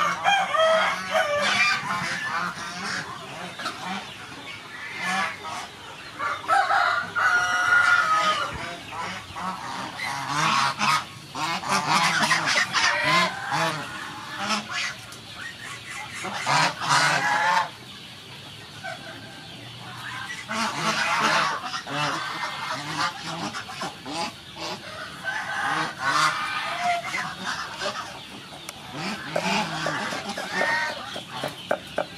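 A flock of domestic geese honking, in loud bursts of many overlapping calls separated by short quieter spells.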